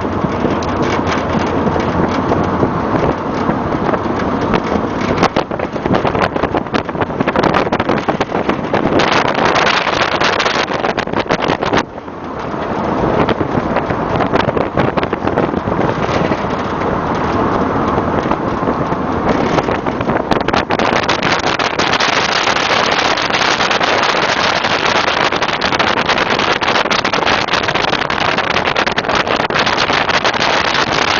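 Wind buffeting the microphone and road noise while riding in the open bed of a moving pickup truck, a loud, steady rush that dips briefly about twelve seconds in.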